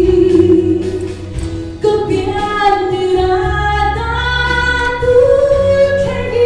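A woman singing a hymn solo into a microphone, holding long notes; about two seconds in a new phrase starts and climbs step by step to higher notes. Low sustained accompaniment notes sound underneath.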